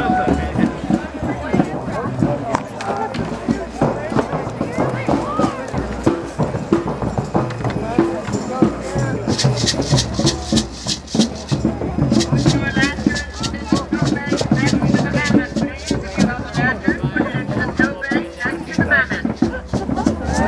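Crowd of people talking, with music in the background. From about halfway through, a run of quick, sharp rhythmic beats.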